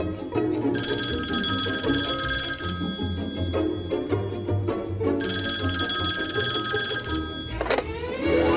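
A telephone ringing twice, each ring about two seconds long, over background music with a repeating bass line; a brief sliding sweep in pitch comes near the end.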